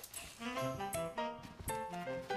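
Cartoon background music: a light melody of short stepping notes over a bass line, with soft percussive clicks.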